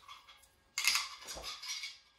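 Stainless steel pistol magazines clinking and rattling against each other as they are set down, starting suddenly about three-quarters of a second in and lasting about a second.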